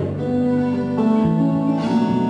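Acoustic lap steel guitar played with a slide bar, sounding sustained notes of an instrumental phrase, with a new lower note coming in about halfway through.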